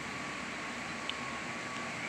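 Steady outdoor background noise: an even hiss with a faint steady high tone and one tiny click about a second in.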